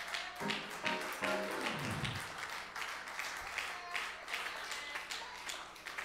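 Soft, short keyboard notes from a church keyboard, with scattered hand claps and taps throughout and a brief falling tone about two seconds in.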